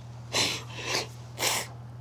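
A woman crying: three short, breathy sobbing breaths about half a second apart.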